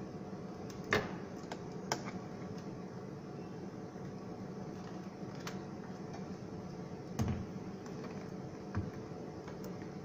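Light clicks and knocks from handling a plastic water ionizer and its power cable as the cord is connected to the machine, over a steady room hum. The sharpest click comes about a second in, with a few fainter knocks after it.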